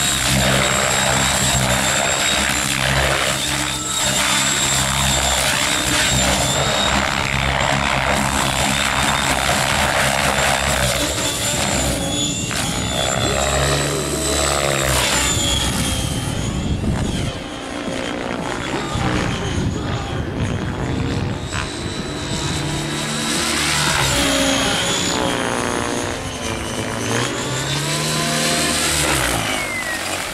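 Radio-controlled helicopter in flight: a steady high whine of rotors and motor that rises and falls in pitch as it manoeuvres. It grows fainter in the middle as it flies farther off, then comes back louder.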